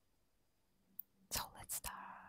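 Close-miked whispering and mouth clicks into a small handheld microphone. About a second of near silence, then a click, a quick run of short breathy sounds and a soft whisper near the end.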